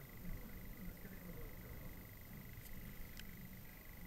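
Faint steady high-pitched electrical whine with a low rustle of handling noise and a couple of faint clicks in the second half.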